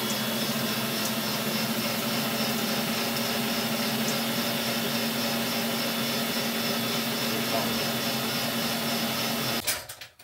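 Electric stand mixer motor running at one steady speed, whipping egg whites in a stainless steel bowl, then switched off suddenly near the end.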